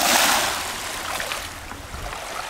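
Small waves washing over a smooth-pebble beach: a hiss that swells at the start and then fades away as the water draws back.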